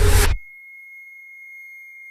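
A loud, noisy swell of horror-trailer sound design cuts off abruptly a third of a second in. It leaves a single steady, high-pitched electronic tone hanging on its own.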